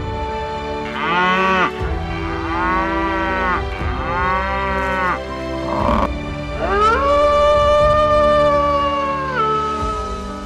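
Three moo-like bellows, each rising and falling in pitch, from an American bison, then a long, held, howling call from an arctic fox that drops in pitch at its end, over background music.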